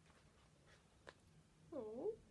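Near silence with faint room tone, a small click about a second in, then near the end a short high call that dips and then rises in pitch, like a cat's meow.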